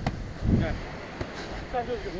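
A beach volleyball struck by a player's hands, one sharp slap at the start and a fainter one about a second later, with players' shouts between them.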